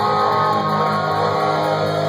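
Punk rock band playing live in an instrumental passage, with the electric guitar the loudest and its chords held and ringing.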